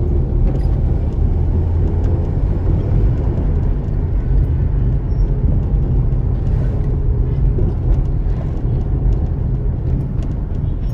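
Steady low rumble of a car driving slowly, heard from inside the cabin: engine and tyre noise from the car carrying the camera.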